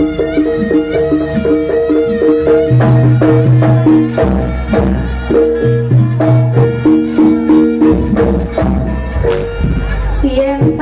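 Loud live traditional Javanese music accompanying a jaranan/barongan dance: repeating pitched metal notes in a steady pulse, with drum strokes underneath.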